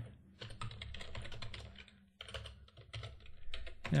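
Typing on a computer keyboard: a quick run of keystrokes, a short pause about two seconds in, then another run.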